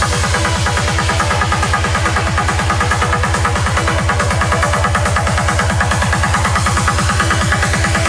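Tech trance music: a fast rolling bassline pulsing about nine times a second under steady held synth tones.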